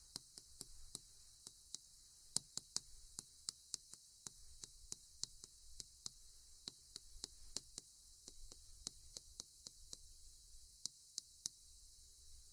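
Chalk clicking against a chalkboard as words are written: a faint, irregular run of sharp taps, several a second.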